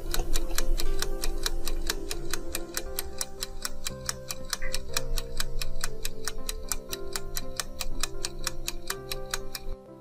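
Countdown-timer clock ticking sound effect, fast and even, over a soft sustained music bed. It marks a ten-second thinking time.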